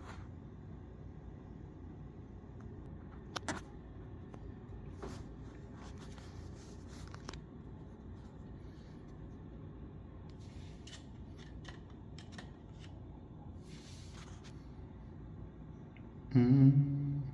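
Quiet, steady low room hum with a few faint clicks and small knocks, the sharpest about three and a half seconds in.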